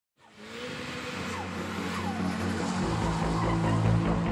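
Opening of an edited intro soundtrack: a rushing, noisy sound with a few sliding pitches fades in, then a deep bass note of the music enters near the end and grows louder.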